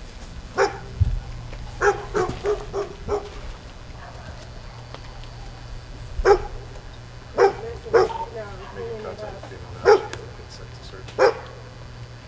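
A dog barking: about eleven single barks, several in a quick run near the start, then spaced out a second or two apart, over a steady low hum.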